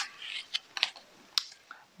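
A picture book's paper pages being handled: a few short soft clicks and rustles, three of them spread over the two seconds.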